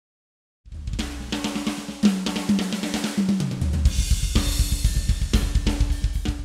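Drum kit playing a fill that starts just under a second in. Drum strokes step down in pitch, then rapid, evenly spaced bass drum strokes run under a cymbal wash.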